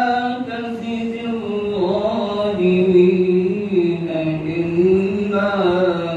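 A man reciting the Quran in a slow melodic chant, holding long notes that waver and step between pitches.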